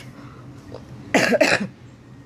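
A woman coughs twice in quick succession, about a second in, into her hand.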